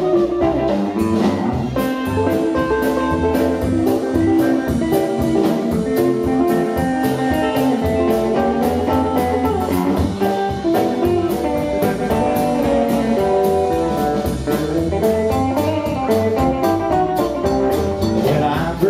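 Rockabilly band playing an instrumental break live: a hollow-body electric guitar takes the lead over bass and drums.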